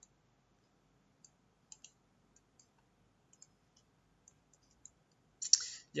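Faint, irregular clicks of a computer mouse and keyboard, about a dozen scattered over several seconds, as text is copied and pasted between windows.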